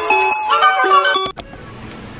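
Edited-in background music with a melody of short held notes, cut off abruptly with a click just over a second in, leaving a much quieter background.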